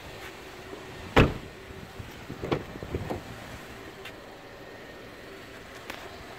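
A sharp knock about a second in, then two softer knocks, from things being bumped and handled in a car's cabin, over a faint steady hum.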